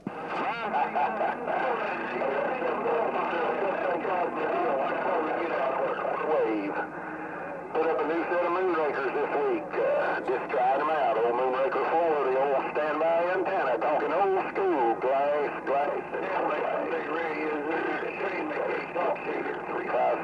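A station's voice received by a President HR2510 ten-meter radio and played through its speaker. It comes in over skip, thin and narrow, with steady static behind it and a short fade about seven seconds in.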